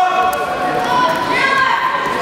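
Several people's voices talking and calling out over one another in a large, echoing sports hall, no words standing out clearly.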